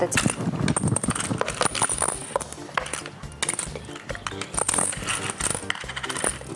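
Small plastic game counters clicking and clattering against each other and a wooden tabletop as they are slid and counted by hand, over background music.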